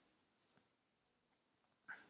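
Near silence: room tone, with a couple of very faint ticks.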